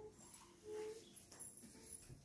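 A dog whimpering faintly in short, high whines.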